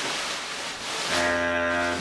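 A second of noisy hiss, then a steady low drone at one unchanging pitch for about a second that cuts off abruptly.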